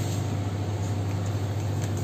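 Steady low mechanical hum at an even level, with a faint click near the end.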